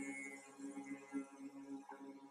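Quiet ambient meditation music with soft sustained tones.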